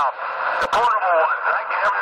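A voice received over a CB radio, coming through its speaker thin and narrow, with no deep or very high tones.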